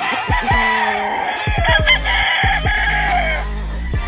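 A rooster crows once, one long crow of about three seconds, over background music with a steady beat.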